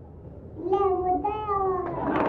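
A toddler's high voice calling out two long, drawn-out syllables, the second falling slightly in pitch.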